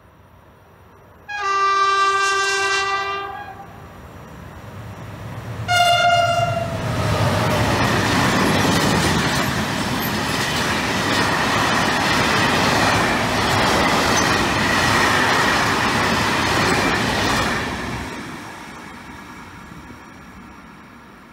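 Freight train horn: a long blast of about two seconds, then a short higher blast a few seconds later as the locomotive reaches the station. Then the freight wagons rumble and clatter past for about twelve seconds, fading out near the end.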